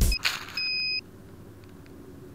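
Music cuts off, then an electronic beep sounds: a short blip and a steady single-pitched beep of about half a second, followed by a faint hum.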